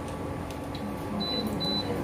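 Induction cooker control panel beeping twice in short high beeps as its touch buttons are pressed to change the heat setting.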